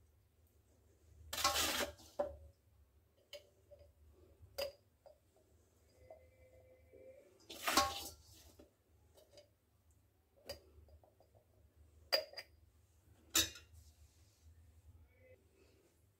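A metal spoon scraping and clinking against a steel pan as pickle is spooned out. The strokes are scattered with quiet gaps between them; the loudest come a second or two in and about eight seconds in.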